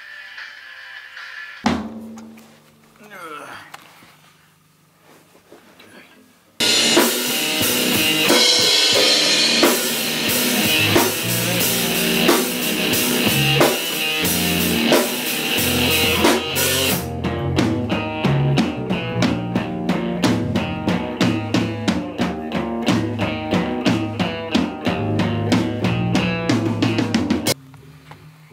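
Rock band playing loud in a rehearsal room, with drum kit, bass and amplified guitar. It comes in abruptly after a few quieter seconds, and in the second half the drums keep a fast, steady beat.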